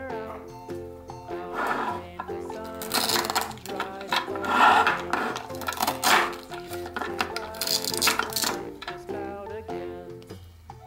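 Plastic toy cake slices joined with Velcro being cut apart with a plastic knife: several short rasping tears, the loudest about halfway through, with plastic clacks, over background music.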